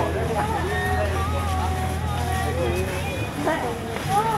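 People talking at a street-market stall, over a steady low engine-like hum that stops about three seconds in.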